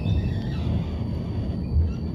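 Siemens ULF A1 low-floor tram running, heard from inside the car: a steady low rumble, with a few short high chirps in the first second and a single thump near the end.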